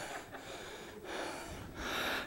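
Faint breath sounds from a man close to a microphone during a pause in speech, over low background noise, a little louder near the end.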